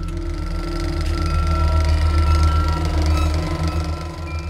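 Film projector running: a rapid, even mechanical clatter over a steady low hum, swelling and then fading near the end.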